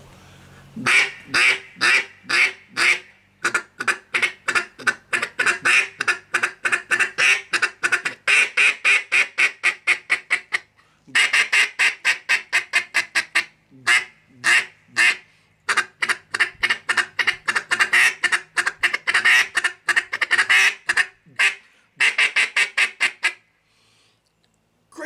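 Custom wooden double-reed duck call blown in quacks and fast chuckle runs, several notes a second, broken by short pauses.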